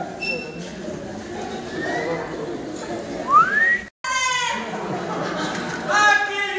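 Voices from a stage and audience, with one voice rising sharply in pitch in a high cry about three seconds in. The sound cuts out completely for a moment just before the four-second mark, then a long cry falls in pitch.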